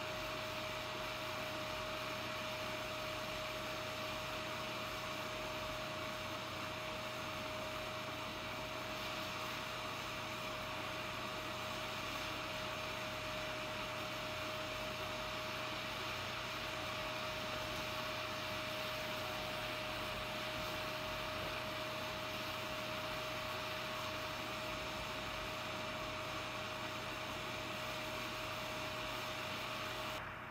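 Gas torch flame hissing steadily into a clay melting dish as it melts karat gold scrap together with inquarting silver, with a steady tone running through the hiss.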